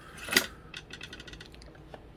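Small metal parts being handled: one sharp click about a third of a second in, then a quick run of faint metallic ticks.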